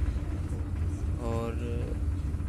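Steady low rumble of a shuttle bus in motion, heard from inside the cabin. A short burst of voice comes about halfway through.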